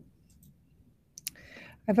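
Mostly a quiet pause, broken about a second in by a couple of sharp clicks and a soft breath, before a woman starts to speak at the very end.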